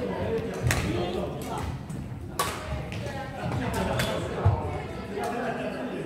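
Badminton rackets striking a shuttlecock in a rally: three sharp cracks about a second and a half apart, echoing in a large hall. A low thud comes just after the third hit, over constant background chatter.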